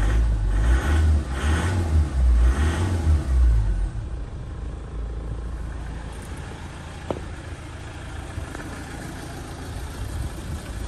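Ford Transit's TDCi turbo-diesel engine revved in a few quick blips over the first four seconds, each rising and falling, then settling to a steady idle.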